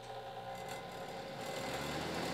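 Duct blaster fan running with a steady motor hum and rush of air, growing gradually louder.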